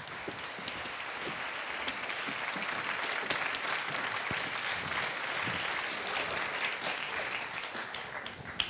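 Studio audience applauding, building quickly at the start and then holding steady.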